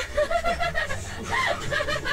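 A person laughing and chuckling in short bursts over a low rumble of street traffic.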